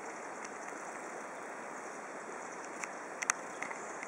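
Steady rushing of a small rocky stream's running water, with a few short sharp clicks about three seconds in.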